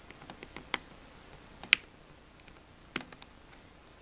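Small, scattered ticks and clicks of a precision craft knife and fingertips working carbon-fibre vinyl wrap on a laptop lid as the vinyl is cut and pulled back, with three sharper clicks about a second apart, the middle one loudest.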